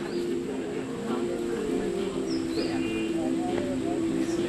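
Small birds chirping briefly a few times, high and short, over a steady low drone of sustained tones that shift in pitch.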